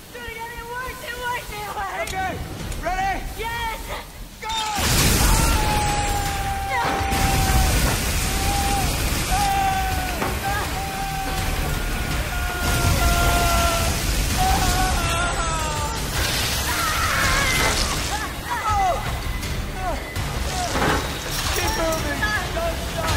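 Pressurised steam jets blasting with a loud hiss and rumble from about five seconds in. Over them a person cries out, first in short gasping whimpers and then in long, drawn-out screams.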